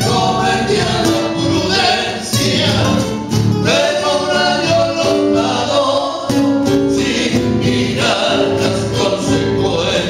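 Male voices singing together in harmony, accompanied by strummed acoustic guitars: a live folk song performed by a guitar trio.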